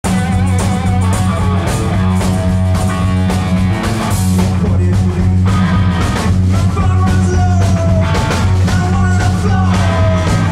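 Live rock band playing loud: electric guitar and drum kit over a steady, sustained low bass note.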